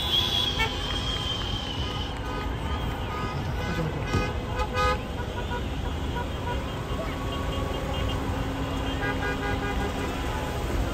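Car horns sound in runs of short, repeated beeps from a traffic jam, over the steady rumble of idling and crawling cars and a crowd's voices.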